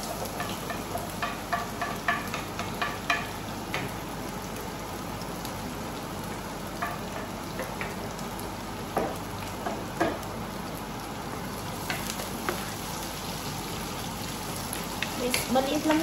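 Diced red onion sizzling steadily in hot oil in a frying pan, with scattered clicks and scrapes of a wooden spoon against the pan, most of them in the first few seconds and again near the end.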